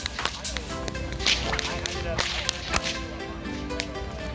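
Whip cracking: a rapid, irregular series of sharp cracks, about a dozen in four seconds.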